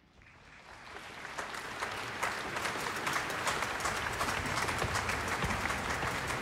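Theatre audience applauding, swelling from silence over the first two seconds into steady clapping.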